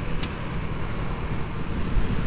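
Honda C90 Cub's small single-cylinder four-stroke engine running steadily under way, with low rumbling wind noise over the on-board microphone. A brief click sounds about a quarter second in.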